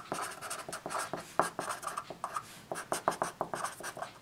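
Felt-tip marker writing on paper: a quick, uneven run of short scratchy strokes as letters are written out.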